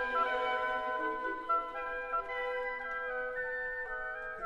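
The woodwind section of a symphony orchestra, led by flutes, plays a quiet passage of held notes, moving to a new chord every second or so.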